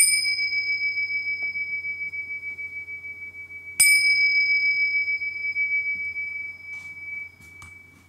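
Tingsha, a pair of small hand cymbals, struck together twice about four seconds apart. Each strike gives one clear high ring that wavers slightly as it fades. A couple of faint clinks come near the end as the cymbals are set down.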